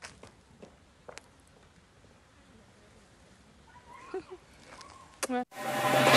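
Mostly very quiet, with a few faint clicks and soft, indistinct voice sounds. Near the end comes a short pitched sound, then a whoosh that rises quickly in loudness as a logo sting begins.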